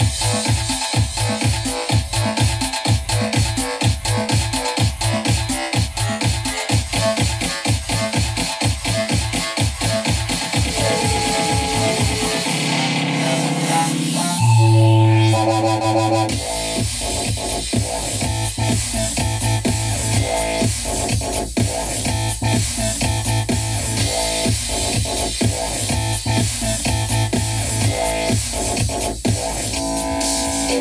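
Electronic dance track with heavy bass played at full volume through two JBL portable speakers at once, a JBL Xtreme and a JBL Xtreme 2, fed the same signal by aux cable. A steady pounding beat runs until the bass drops out briefly about twelve seconds in, then a deep sustained bass line comes back in.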